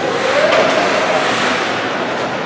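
Ice hockey rink during play: a steady, loud wash of skates scraping the ice mixed with spectators' voices, no single sound standing out.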